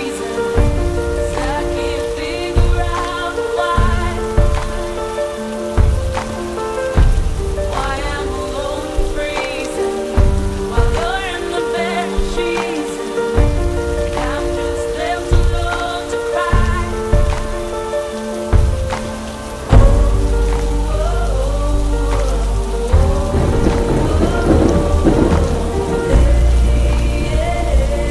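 Recorded steady rain mixed over slow instrumental music with sustained tones and low bass pulses. About twenty seconds in a deep low rumble comes in and stays.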